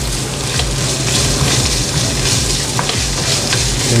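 Ground pork frying in olive oil in a nonstick pan, sizzling steadily while a wooden spatula stirs it, with a few short scrapes against the pan.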